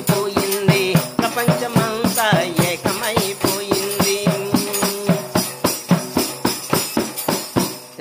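A hand-held tambourine beaten in a fast, steady rhythm of about four strokes a second, its jingles rattling, under a man's singing voice with a long held note in the middle. The beating stops just before the end.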